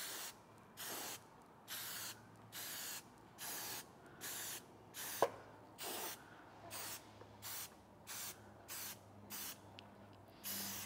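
Aerosol spray can of red primer being sprayed in short bursts, about a dozen hisses of half a second each, coming just under a second apart. A pause about halfway through, with a single sharp click.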